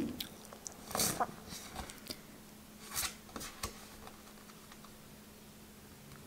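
Tarot cards sliding against one another as a card is moved through the deck by hand: a papery swish about a second in and another near three seconds, with a few light clicks.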